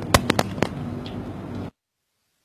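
A few sharp pops or knocks, four or five in the first second, over a steady low hum; the sound then cuts off abruptly to silence shortly before the end.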